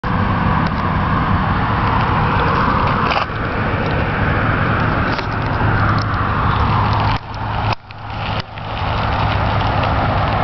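Continuous rushing of an electric bicycle riding along a paved trail: wind on the microphone and tyre noise, over a steady low hum. The noise drops away briefly about seven seconds in, then returns.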